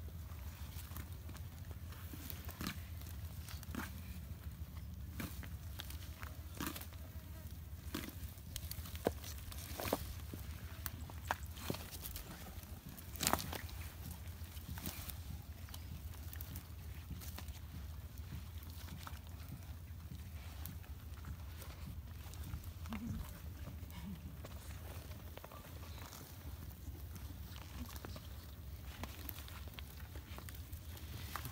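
Komodo dragons feeding on a goat carcass: scattered short cracks and snaps as they tear and bite at it, thickest and sharpest about ten to thirteen seconds in, over a steady low rumble.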